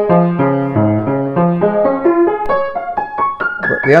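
Hagspiel grand piano of about 1870, way out of tune, being played: notes and chords in the middle register, then a rising run of single notes climbing toward the treble in the second half.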